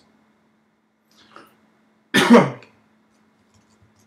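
A man's single short cough, about two seconds in, over a faint steady hum.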